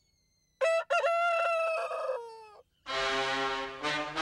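A rooster crowing once, starting about half a second in: one long call that falls in pitch at its end. Brass music begins about three seconds in.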